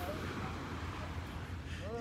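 A lull in the talk: steady low background noise with no distinct events, and a faint voice just before the talk resumes near the end.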